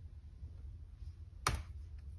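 A single sharp click on a Dell Inspiron 3511 laptop about a second and a half in, against quiet room tone.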